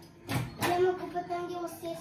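A brief knock, then a voice holding one steady hummed note for about a second and a half.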